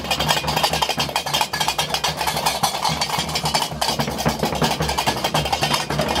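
Gnawa qraqeb, large iron castanets, clacking in a fast, dense rhythm, with a brief break a little past halfway.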